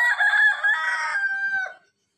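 A rooster crowing once: a loud call of about two seconds that dips in pitch at the end.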